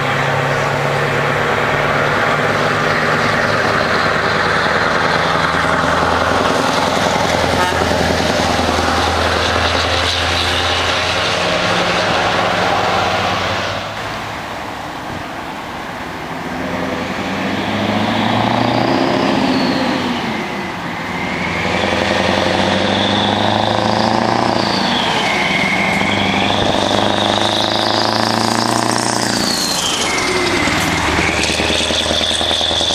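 Scania truck diesel engines with open exhaust pipes, running loud and deep as the trucks drive past and pull away. The sound dips briefly about halfway through. A second truck then approaches and passes, with rising and falling whistling tones over the engine near the end.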